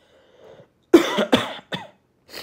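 A person coughing: three quick coughs starting about a second in, the first the loudest.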